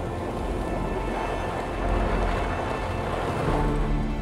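Pickup truck driving on a dirt road: a steady rumble of engine and tyres, with soft background music underneath.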